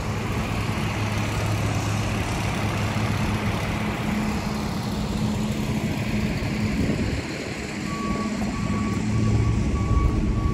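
Garbage truck with a front snowplow running as it drives past on a wet street, a steady low engine hum over tyre noise that fades away after about seven seconds. Near the end a vehicle's reversing alarm beeps repeatedly.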